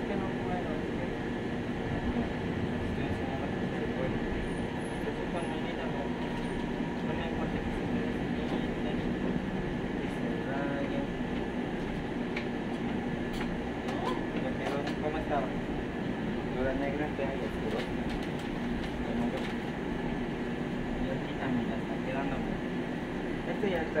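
Steady hum of shop machinery with several constant tones, with faint voices in the background now and then.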